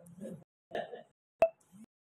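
Short, broken fragments of a man's voice through a microphone, cut off abruptly between syllables, with one sharp pop about one and a half seconds in.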